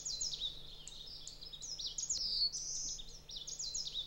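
Birds chirping: a rapid, overlapping run of short, high-pitched chirps, many of them sliding downward in pitch.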